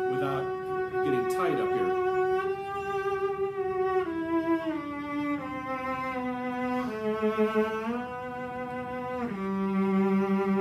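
Cello playing a slow one-finger G major scale with vibrato: a long held note, then bowed notes stepping down one by one, with a drop to the low G about nine seconds in.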